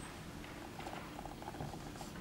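Hushed concert hall before the performance: low steady room rumble with faint scattered rustles and ticks.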